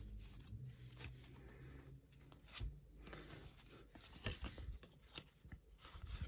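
Faint rustling of a stack of paper trading cards being handled, slid and flipped in the hands, with scattered soft clicks as card edges knock and snap against each other.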